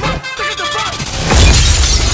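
Film soundtrack music with a voice, broken about a second and a half in by a loud crash of shattering glass over a heavy low thud.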